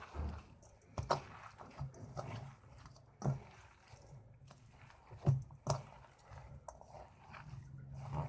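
A hand squeezing and kneading boiled mashed potato with spices and chopped herbs in a stainless steel bowl. It makes soft, irregular squishing sounds, with a few louder sharp ones scattered through.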